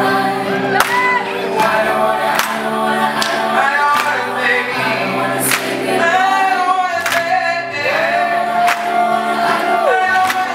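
A live male vocal sung into a microphone, holding and bending long notes over sustained backing chords, with a sharp percussive hit or clap on roughly every beat, a little over one a second.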